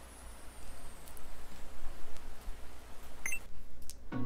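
Quiet opening of a music video's soundtrack: a soft, even hiss that swells slightly, with a brief high chiming blip about three seconds in, just before the music begins.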